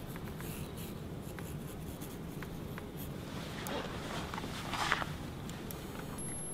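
Marker pen scratching across a football shirt as it is autographed, a run of strokes that get louder in the second half, over a low room hum.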